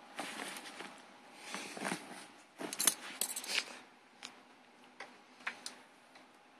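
A cat scuffling at a crumpled fabric bag on carpet: irregular bursts of fabric rustling, with a quick cluster of sharp clinks in the middle and a few single ticks near the end.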